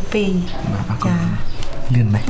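Speech: people talking, a man speaking in a low voice through most of it.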